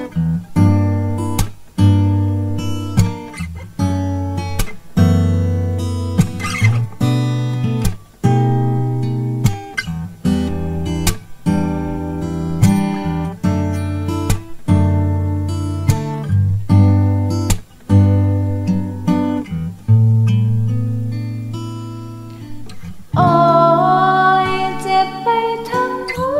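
Instrumental passage of a song on acoustic guitar: chords struck roughly once a second, each ringing and fading before the next. A singing voice comes back in near the end.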